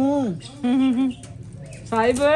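Wordless, sing-song cooing in a person's voice, as baby talk: a rising-and-falling call, then a short held note, with another call starting near the end.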